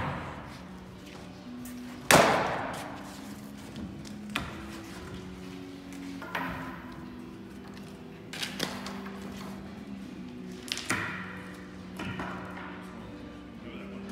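Knocks and bangs of a wooden-framed cardboard motorcycle shipping crate being taken apart and its panels lifted off: one sharp bang about two seconds in that rings on, then several lighter knocks spread through the rest.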